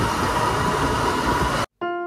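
Loud, steady outdoor street noise, likely traffic, with a faint constant high tone. Near the end it cuts off abruptly, and background music on electric piano begins, with notes repeating about twice a second.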